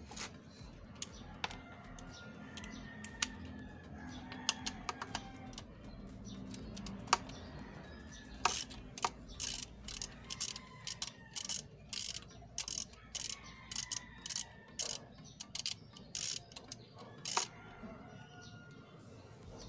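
Socket ratchet wrench working the bolt that holds the ABS sensor on a scooter's rear wheel, to remove the sensor. Small scattered clicks at first, then from about halfway a steady run of clicking ratchet strokes, about two a second.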